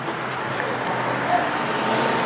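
Road traffic passing, a steady rush of vehicle noise that grows gradually louder.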